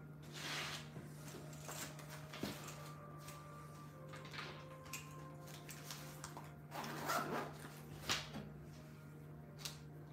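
Quiet room tone with a steady low hum and a few soft, brief noises, the loudest about seven seconds in.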